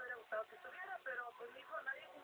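Speech only: a person talking in Spanish, with no other sound standing out.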